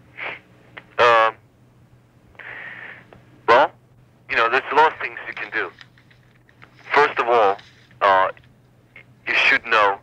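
A man speaking in short phrases with pauses, with the narrow, thin sound of a telephone line and a steady low hum underneath.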